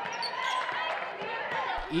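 Game sound in a gym: many overlapping voices from the crowd and players, with a basketball bouncing on the hardwood floor.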